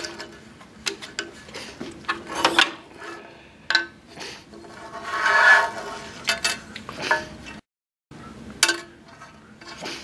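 Hands working a scroll saw's blade clamp and freeing a wooden cutout from the stopped blade: scattered clicks and light knocks of metal and wood on the metal table, with a rubbing noise lasting about a second midway.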